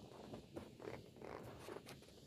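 Faint rustling and a few small clicks and knocks in a quiet, reverberant church: people shifting in wooden pews and clothing rustling during a lull.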